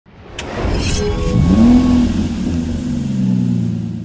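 Intro sound effect of a car engine: a short whoosh, then the engine revs up sharply about a second and a half in and slowly winds back down, fading out near the end.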